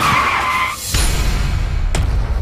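Car tyres screeching in a skid, a high squeal that cuts off in under a second, followed by a deep low rumble.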